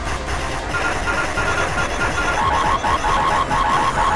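Dense, distorted remix audio: a loud noisy wash with a short high beep repeating about three to four times a second, stepping down in pitch about halfway through.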